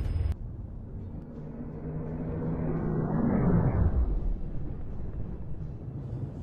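Rocket engine noise: a rumble that builds to a peak about three to four seconds in, with a tone that falls in pitch as it eases off.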